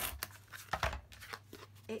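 Kraft cardboard being handled and creased along a fold, heard as a few short rubbing and scraping strokes. A faint steady low hum runs underneath.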